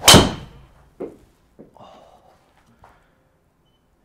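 A driver striking a golf ball off a tee on a full-effort swing of about 111 mph club speed: one loud, sharp crack with a short ringing tail. About a second later comes a dull thud as the ball hits the simulator screen, followed by a few faint soft knocks.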